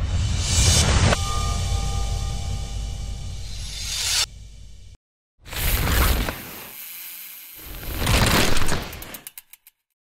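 Sound effects for an animated logo. First a whoosh over a low rumble that ends sharply, then, after a short silence, two more swelling whooshes with a mechanical, ratcheting texture. The last one trails off into quickening clicks.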